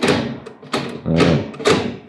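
Gear shifter on a test rig being worked through its gates: about four sharp metallic clunks, roughly half a second apart, each with a short ring.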